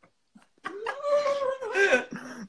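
A high, drawn-out whine that starts after a brief silence, wavers, then rises in pitch near the end.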